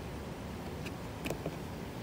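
Two faint clicks about half a second apart as buttons on an AmHydro IntelliDose dosing controller's keypad are pressed, over steady low background noise.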